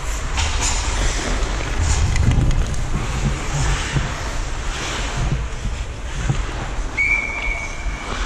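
Wind rushing over a helmet-mounted microphone while an ice hockey player skates, with rink noise underneath. About seven seconds in, a referee's whistle sounds one steady blast of about a second.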